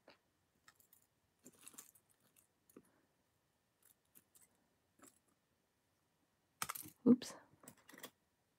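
Small metal and rhinestone jewelry pieces clicking and clinking as hands pick through them and set them down on a cloth: sparse light ticks, with a louder cluster of handling sounds about seven seconds in.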